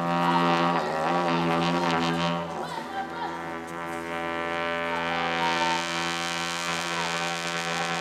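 Tibetan Buddhist ritual music: a deep, steady drone with a rich stack of overtones, strongest in the first two and a half seconds, with higher wavering voices over it.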